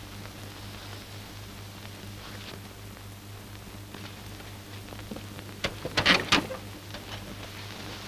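Steady hiss and low hum of an old optical film soundtrack. A short cluster of sharp sounds comes about six seconds in.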